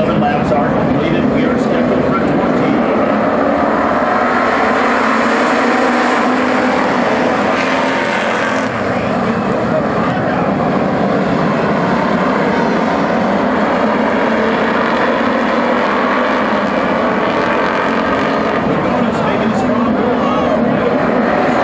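A field of dirt-track street stock race cars running together in a pack, their engines making one loud, steady drone.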